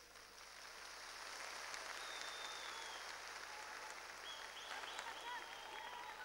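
Audience applauding faintly, a steady even clatter that builds up over the first second, with a few faint calls from the crowd in the second half.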